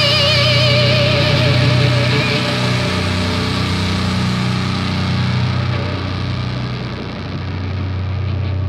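Death metal band's final distorted electric guitar chord ringing out. A held lead note with vibrato fades within the first few seconds, leaving a steady low drone that slowly thins.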